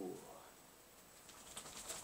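A man's drawn-out, appreciative 'ooh' trailing off at the start, then a quick run of short sniffs near the end as he noses a glass of beer.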